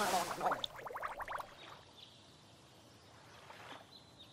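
Water splash dying away into a short run of gurgling bubbles over the first second and a half, then near quiet.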